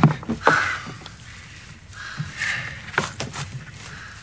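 A few short clicks and taps with light rustling, from metal jumper-cable clamps and wires being handled and connected.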